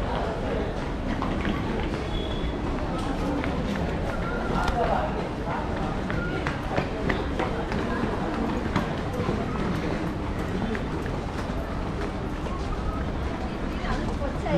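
Hurried footsteps on a railway station platform, with scattered short clicks and a steady low rumble, amid the voices of other people nearby.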